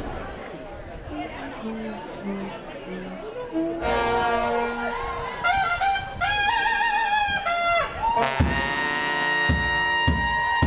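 New Orleans second-line brass band striking up over crowd chatter: a few low horn notes, then trumpets and trombones come in about four seconds in, and the full band with bass drum joins about eight seconds in.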